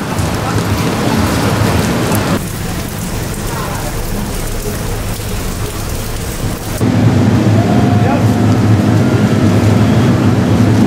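Steady rain and wet city-street noise, an even hiss. The sound changes abruptly about two and a half seconds in and again near seven seconds, where it turns louder with a deep rumble.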